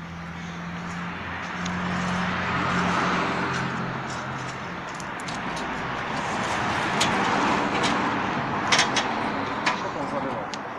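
Water poured onto hot charcoal embers and ash, hissing as it steams, swelling twice with a few faint crackles.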